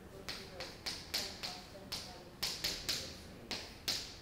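Chalk writing on a blackboard: about a dozen sharp, irregular taps and clicks as the chalk strikes the board, forming letters of an equation.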